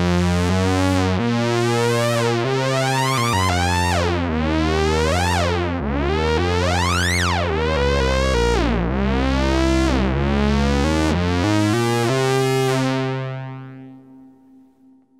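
Moog Grandmother semi-modular analog synthesizer playing a run of notes with oscillator sync on, the envelope sweeping the synced oscillator's pitch on each note for a harmonically rich, almost metallic sweep. The sweeps grow deeper toward the middle and then shallower as the attenuator controlling the envelope's strength is turned, and the playing stops near the end.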